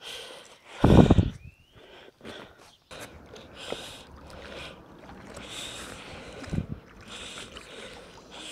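A fishing magnet's rope being hauled in hand over hand out of canal water, heard as faint, soft swishes every second or so.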